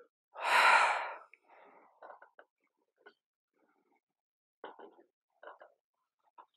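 A woman's single loud, deep breath through the mouth about half a second in, taken during a squat-based exercise. Faint short breaths or movement sounds follow later.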